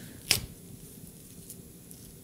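A ripe banana being peeled by hand: one sharp snap as the stem is broken open, then faint soft sounds of the peel being pulled back.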